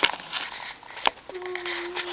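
A young child's voice: soft rustling and a couple of sharp clicks, then one steady, held hum lasting about a second near the end.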